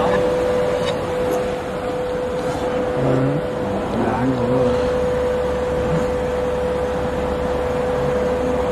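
Steady hum of machinery in a garment-machine workshop, with a constant mid-pitched whine running under it. Faint voices are heard briefly a few seconds in.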